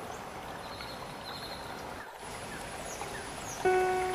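Steady rush of flowing water, with a few short high chirps over it. Background music comes in near the end.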